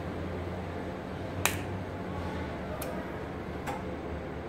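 MI-cable capacitor-discharge and TIG welding machine cycling through a stress test: a steady low hum with three sharp snaps, the loudest about a second and a half in and two fainter ones later.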